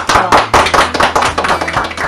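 A small group of people applauding: a quick, dense run of hand claps.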